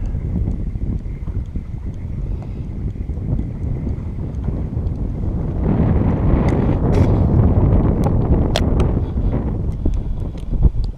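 Wind buffeting the microphone in a steady low rumble, growing louder and fuller about halfway through, with a few faint sharp clicks near the end.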